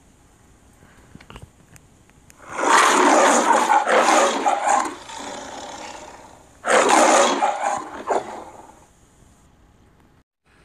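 The MGM logo's lion roar sound effect, the 1995 version: a lion roaring twice, a long roar starting about two and a half seconds in, then after a pause a shorter second roar.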